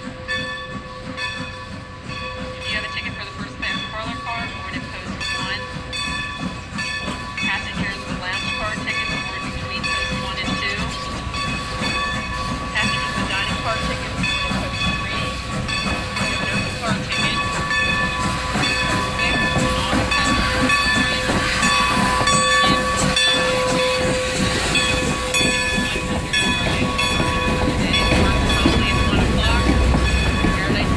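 Steam locomotive arriving slowly at the station, growing louder as it comes near, with steam hissing. Its wooden passenger coaches then roll past with low wheel rumble.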